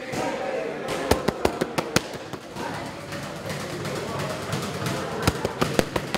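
Boxing gloves smacking focus mitts: a quick run of sharp slaps about a second in, and another flurry near the end, over voices in the background.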